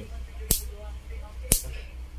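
Two sharp clicks about a second apart from the anti-reverse on/off lever of an opened spinning reel being worked by hand; its return spring is broken, so the lever no longer pulls back and locks. A steady low hum runs underneath.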